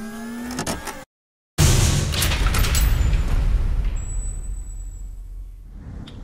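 Logo intro sound effect: a rising pitched sound that cuts off abruptly about a second in, a brief gap of silence, then a loud, deep hit that slowly dies away over the next few seconds.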